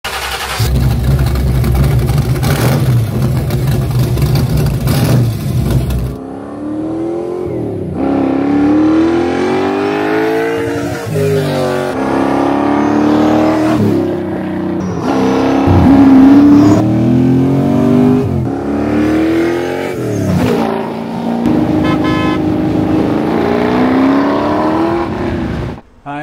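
A 427 cubic-inch stroker V8, built on a 351 Windsor block, idles steadily for about six seconds. It then revs and accelerates, its pitch climbing and dropping back several times.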